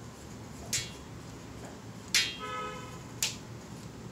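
Sketch pen tapping and drawing on paper strips: three sharp taps about a second apart over a faint background hum.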